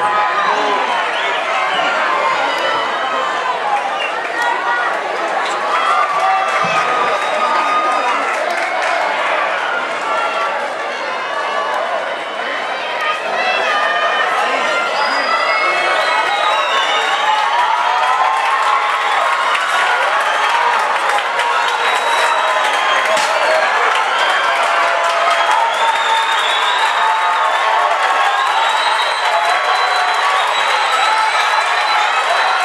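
A stadium crowd shouting and cheering, many voices at once, dipping briefly about twelve seconds in and then building again.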